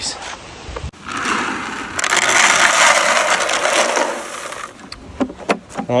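Dry livestock feed poured out of a bucket: a steady, grainy rattle of pellets lasting about three and a half seconds, followed by a few scattered clicks.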